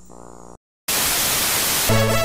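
Videotape static: a faint hum, a short dropout to silence, then a loud hiss of white noise lasting about a second. Music starts near the end.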